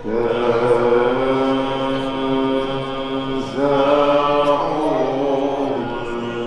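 Male voices chanting a maulid qasida in maqam rast, holding long notes; the chant comes in at the start, holds one line, and a new phrase begins just past halfway.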